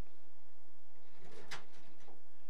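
Slide projector advancing to the next slide: a faint click with a brief mechanism sound about a second and a half in, over steady tape hiss and hum.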